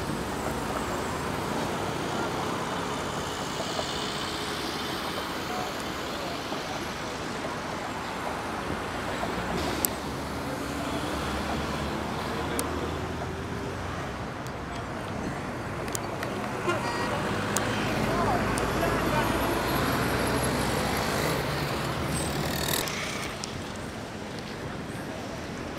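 Outdoor street ambience of road traffic running steadily, with indistinct voices in the background and a few sharp clicks.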